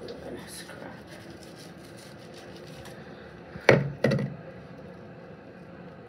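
Two short knocks close together, about half a second apart, a little over halfway through, over quiet handling sounds.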